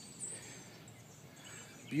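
Wild songbirds chirping faintly, with one short high chirp about a quarter second in, over a quiet outdoor background hiss.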